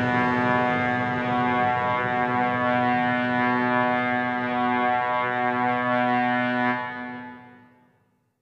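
Sustained musical drone: a steady chord of held tones that fades out to silence in the last second or so.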